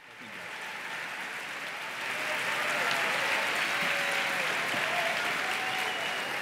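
Large audience applauding, fading in at the start and growing louder about two seconds in.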